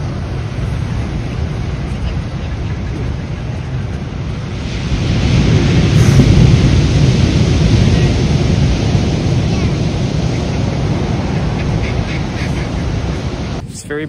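Heavy ocean surf breaking on a black sand beach, with wind buffeting the microphone. A big wave rush swells up about five seconds in and slowly eases off, then the sound cuts off suddenly just before the end.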